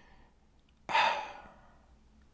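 A man sighing: one breathy exhale about a second in that fades away.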